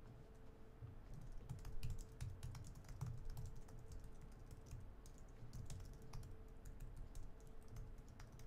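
Faint typing on a computer keyboard: a run of light, irregular key clicks.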